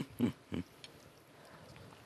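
Three short hummed "mm" sounds of enjoyment from a woman tasting food, each falling in pitch, all within the first second.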